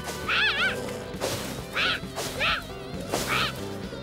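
Animated fight sound: a cartoon monkey's high-pitched squeals, about five short wavering cries, each with a swishing whoosh, over soft background music.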